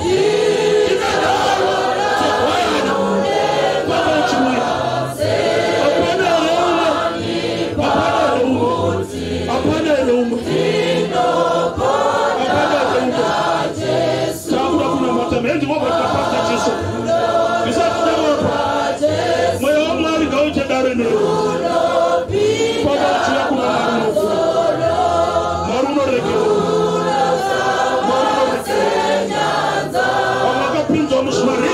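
A man singing a gospel song into a microphone, with a group of voices singing along.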